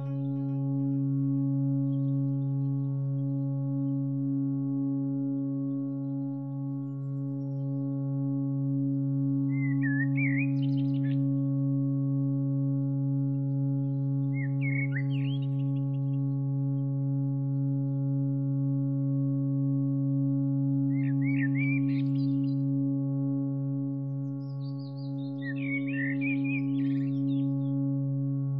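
A low, steady musical drone held without a break, with short bursts of high bird chirps laid over it four times: about ten seconds in, at fifteen seconds, just past twenty seconds and near the end.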